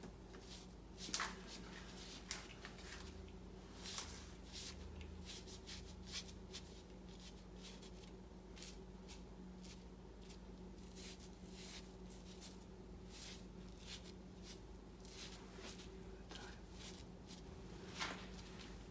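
Faint, short swishes and dabs of a Chinese ink brush stroking and pressing on paper, many irregular strokes as a leaf is painted in light ink, over a steady low hum.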